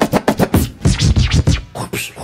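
A DJ scratching a vinyl record on a turntable, loud and fast, chopped into quick stabs about six times a second.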